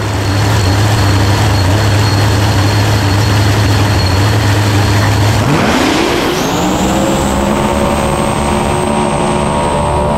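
A no-prep drag racing car's engine running with a loud, steady deep drone. About five and a half seconds in it revs up sharply and keeps climbing in pitch, with a high whine rising alongside it.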